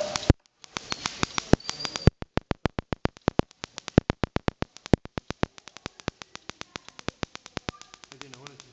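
Sparks from a restored 1890 Wimshurst machine snapping across the gap between its brass discharge balls while the discs spin. They come as a rapid series of sharp cracks, about seven or eight a second and uneven in strength, with a short break under a second in.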